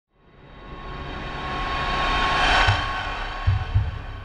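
Ominous soundtrack intro: a noisy drone swells up out of silence, peaking about two and a half seconds in. Deep thuds like a heartbeat begin near the end.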